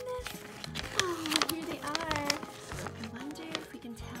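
Crackling and rustling of a paper leaflet and its thin plastic wrapping as it is handled and unfolded, loudest in the first half, over steady background music. A wordless voice slides up and down in pitch through the middle.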